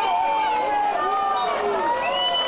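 A single voice singing with held notes over a music track.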